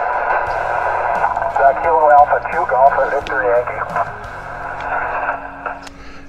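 An HF transceiver's speaker on 20-metre sideband: a steady hiss of static cut off above and below like telephone audio, with a weak distant voice coming through it in the middle. The static fades away near the end.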